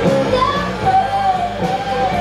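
Live rock band playing, with a singer's voice bending in pitch over electric guitar, bass and drums.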